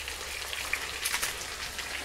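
Fat sizzling steadily in a frying pan, with eggs frying alongside bacon, sausages, tomatoes and mushrooms. A light crackle runs through it, with a few sharper pops about a second in.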